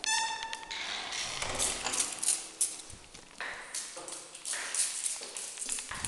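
Handling noise: sequined clothing rubbing and rustling against a handheld camera, with irregular knocks and scrapes throughout. A brief high, steady tone sounds at the very start, lasting under a second.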